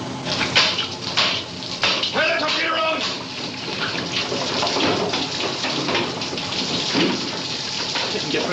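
Seawater spraying and pouring in through leaks in a submarine compartment, a steady rushing hiss, with men's voices over it in the first three seconds or so.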